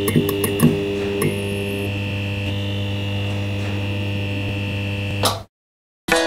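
Steady electrical buzzing hum with a thin high whine above it, a neon-sign sound effect. A few sharp crackles come in the first second or so as the sign flickers, then the buzz holds steady. It swells briefly and cuts off suddenly about five and a half seconds in.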